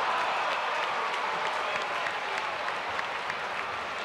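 Crowd applauding, many hands clapping at once and tapering off slightly toward the end.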